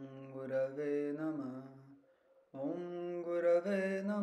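A male voice chanting a Sanskrit mantra in long, held, melodic phrases, with a short pause for breath about two seconds in.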